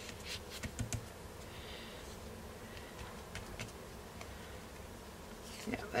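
Hands pressing and smoothing a sheet of card onto a craft mat: a few light taps in the first second, then soft paper rubbing, over a faint steady hum.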